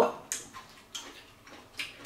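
Crunching of a crisp, deep-fried shrimp being bitten and chewed: three short, sharp crunches spread over about two seconds.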